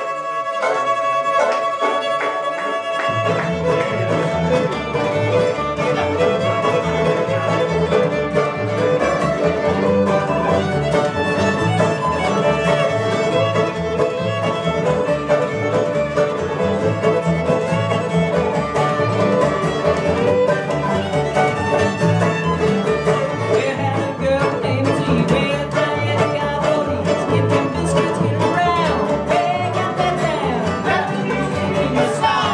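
Live acoustic string band playing an instrumental bluegrass-style tune, led by a bowed fiddle with acoustic guitar, banjo and upright bass. It opens thin with no bass, then about three seconds in the bass and full rhythm come in and carry on.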